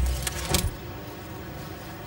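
Glitch-style transition effect: a low drone broken by two sharp crackles, cut off less than a second in, then a steady even background hiss.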